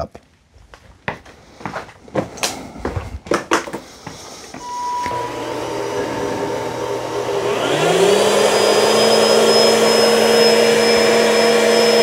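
A few clicks and knocks, then Bissell SpinWave spin mops and the SpinWave + Vac's vacuum switching on: a motor starts humming about five seconds in, and a couple of seconds later a second, higher motor whine rises in pitch and then runs steadily and loudly.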